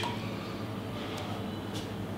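Quiet, steady room tone with a constant low hum, and two faint ticks in the second half.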